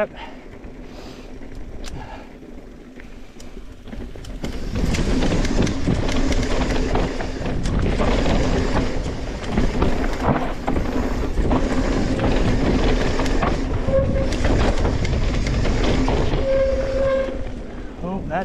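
Mountain bike riding down a rough dirt trail: tyres on dirt and the bike's chain and frame rattling, much louder from about four and a half seconds in.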